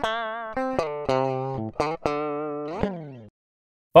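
Dry direct-input (DI) signal of an electric guitar playing a lead line, with no amp or effects: single sustained notes with wide vibrato, plain and thin. It stops about three seconds in.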